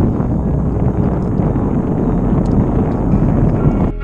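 Strong wind buffeting the microphone: a loud, rough, steady rumble.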